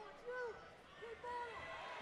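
Faint shouts from people ringside: several short calls that rise and fall in pitch.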